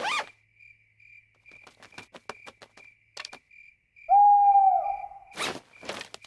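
Cartoon night ambience: crickets chirping in a steady, even pulse, then about four seconds in a single long owl hoot that falls slightly in pitch. A short rush of noise follows near the end.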